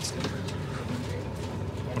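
Steady running rumble of a moving passenger train heard from inside the coach, with faint voices of other passengers in the background.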